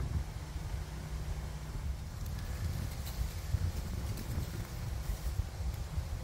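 Wind buffeting the microphone in a low, fluttering rumble over an open beehive, with honeybees buzzing faintly and a few light ticks in the second half.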